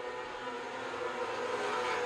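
A pack of winged micro sprint cars running at high revs on a dirt oval, their 600cc motorcycle engines blending into one steady, high-pitched drone whose pitch wavers gently as the cars work through the turns.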